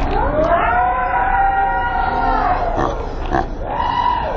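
A man's voice letting out one long, high-pitched, drawn-out call whose pitch rises and then falls, followed near the end by a shorter falling call.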